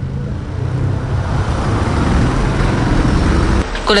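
Street traffic noise: car engines running in slow, congested city traffic, a steady rumble that swells slightly midway and cuts off abruptly near the end.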